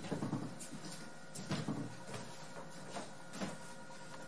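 Footsteps of a person stepping and turning on bare wooden floorboards, an irregular series of soft knocks, over a faint steady hum.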